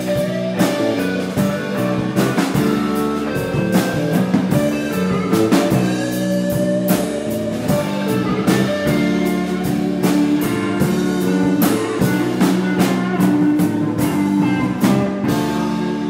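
Live country band playing an instrumental passage: electric and strummed acoustic guitars over bass and a drum kit, with a steady beat.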